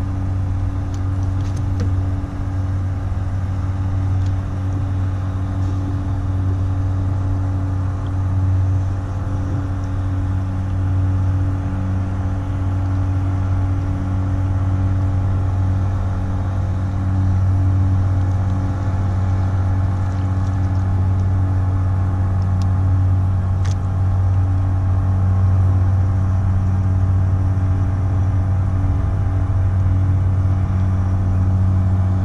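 Motorboat engine running with a steady low drone, growing gradually louder.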